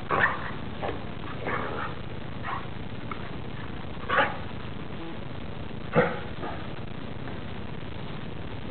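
Catahoula-type dog giving a few short barks and yips, spaced out, with the two loudest about four and six seconds in, over a steady hiss.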